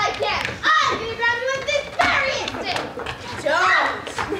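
Children's voices, high-pitched, with some drawn-out vowels.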